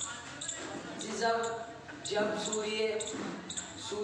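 A voice speaking in a large, echoing hall, with a few short knocks or taps scattered through it.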